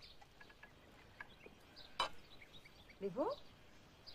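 Faint birds chirping intermittently, with a single sharp click about halfway through and a brief rising voice-like sound near the end.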